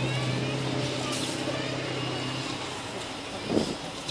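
Engine of a 35-tonne, eight-wheel-drive military recovery truck running steadily as it reverses, the low engine note fading after a couple of seconds. A short hiss of air comes about a second in.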